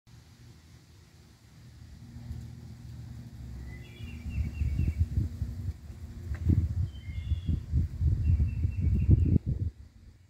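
Birds chirping in a few short runs of quick repeated notes over a low, uneven rumble that builds in loudness and cuts off abruptly near the end.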